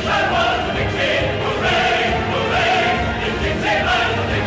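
A choir singing a song from a medley of Southern Civil War-era songs, holding long notes over a musical accompaniment.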